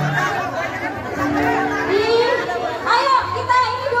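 Several people chatting close by over electronic keyboard music played through loudspeakers, with held notes and a low bass line.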